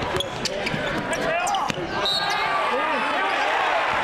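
Basketball being dribbled on a hardwood court during live play, the bounces repeating, with voices of players and crowd throughout.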